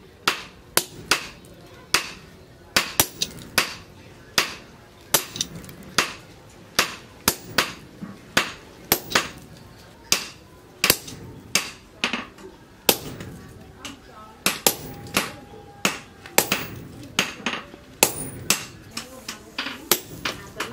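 Sledgehammer blows striking a handled top tool held on red-hot steel on the anvil: sharp metallic strikes, about one to two a second, in a steady working rhythm.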